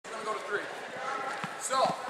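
Voices talking in a large gym, with a couple of dull thuds near the end.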